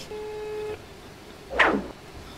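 A mobile phone on speaker plays a single ringing tone lasting about two-thirds of a second, the ringback of an outgoing call that has not been answered yet. About a second and a half in, a short falling swoosh follows and is the loudest sound.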